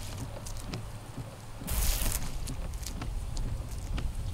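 PIAA silicone wiper blades sweeping across a wet windshield: a swish of blade on glass with a louder pass a little before halfway through, over a low rumble.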